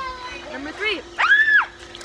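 A girl's high-pitched voice calling out in short bursts, the loudest a squeal-like call about a second in that rises and falls in pitch.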